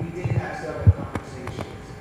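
Several dull thumps, like knocks or bumps on a table or microphone, the loudest a little before a second in, over faint off-microphone speech.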